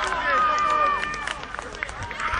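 Children's high-pitched shouting and cheering at a goal, fading after about a second, with a few sharp clicks.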